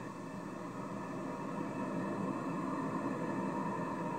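Steady arena crowd noise during a hockey fight, heard through a television speaker.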